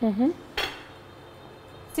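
A metal-rimmed pot lid set down on a counter with a single sharp clink and a brief ring.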